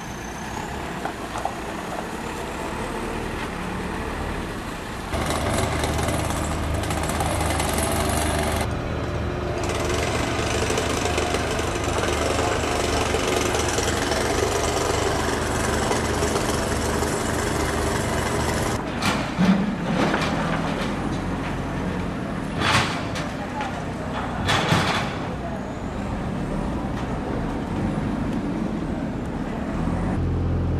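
Construction-site street noise: a heavy engine running steadily for most of the stretch, with a few short sharp noises in the second half and voices in the background.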